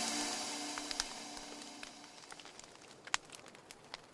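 Background music fading away over the first two seconds. Then a few faint, scattered crackles and pops from a wood campfire, the sharpest about three seconds in.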